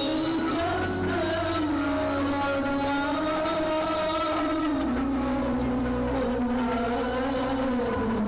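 Slow belly-dance music: a melody of long, slowly gliding held notes over a sustained low bass that shifts pitch about a second in and again near the middle.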